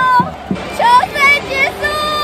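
Women's high-pitched excited shrieks and shouts, several short swooping cries about a second in and a longer held cry near the end, cheering as the game is won.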